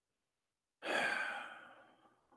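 A man sighs once: a breathy exhale that starts about a second in and fades away over about a second.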